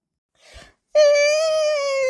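A voice's long wailing cry, starting about a second in and held as one drawn-out note whose pitch sinks slightly.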